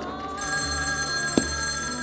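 A steady, high bell-like ringing starts about half a second in and lasts about a second and a half, with a quick downward swoop near the middle, over low background music.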